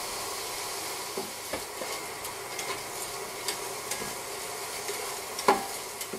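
Orzo pasta, garlic and onion sizzling in butter in a pot as they are sautéed and stirred, with light clicks and scrapes of the stirring utensil against the pot. There is a sharper knock about five and a half seconds in.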